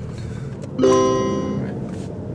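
A single bright chord struck once about a second in, ringing on and fading over about a second, like a plucked guitar chord.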